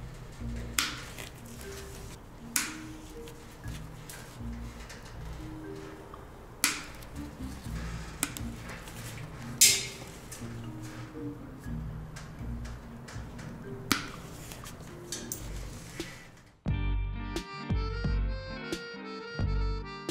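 Soft background music with about five sharp snips of diagonal side cutters trimming copper wire ends, the loudest about halfway through. About three seconds before the end the music changes to a louder plucked-guitar tune.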